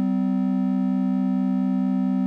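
Two Intellijel Dixie oscillators hold a steady synth drone a fifth apart: the second oscillator is quantized by Scales to sound a fifth below the first. The pitch does not change.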